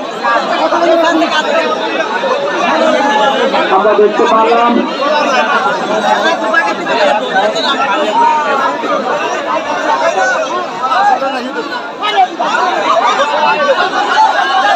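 A large crowd of spectators chattering loudly, many voices talking over one another.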